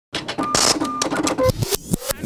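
Quick mechanical clatter of many sharp clicks, with a short rattling burst and two or three brief beeps, laid over the opening title card as an intro sound effect.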